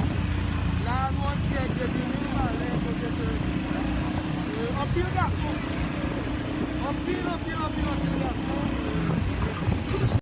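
Street recording with a steady, heavy low rumble of vehicle engines, and people's voices calling out in short bursts over it.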